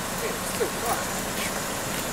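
Faint, distant voices of people talking, over a steady background hiss and a low hum.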